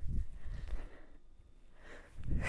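A woman breathing hard through her nose and mouth as she swings a kettlebell through a clean. A low thump comes right at the start, and low rumbling movement sounds follow through the first second before it goes quieter.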